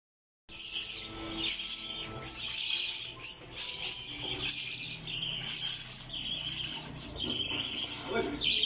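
A group of young lovebird chicks giving raspy, hissing begging calls in repeated bursts about every second.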